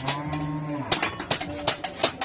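A cow mooing once, a steady low call lasting about a second, followed by several clinks and knocks of plates being handled.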